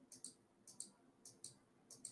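Faint computer mouse clicks, each a quick press-and-release double tick, about four in two seconds, as listing photos are clicked through.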